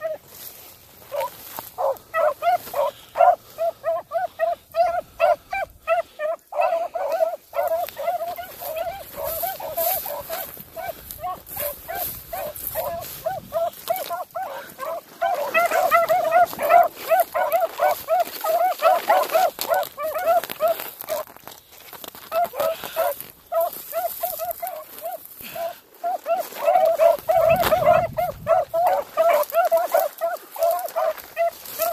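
Hounds baying steadily on a rabbit's trail, short same-pitched calls repeating a few times a second with only brief breaks: the pack is running the rabbit.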